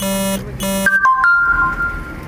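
A loud electronic alert: two short buzzy beeps, then a three-note chime whose last note rings on and fades.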